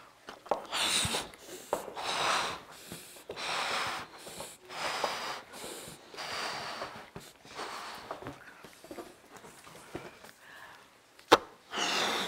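Balloons being blown up by mouth: a run of breathy puffs of air into the rubber, about one every second or so, with quick breaths drawn between them. One sharp click comes near the end.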